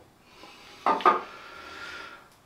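Toiletries being handled on a bathroom counter: a double clunk just under a second in as an item is set down or picked up, then a short spell of rubbing and shuffling.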